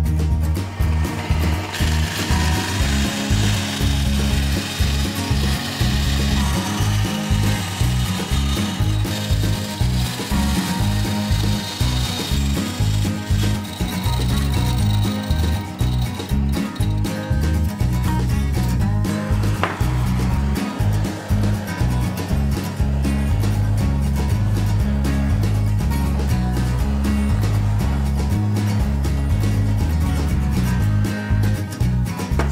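Scheppach benchtop band saw cutting plastic sheet. Its cutting noise is strongest for roughly the first dozen seconds, over background music with a steady beat throughout.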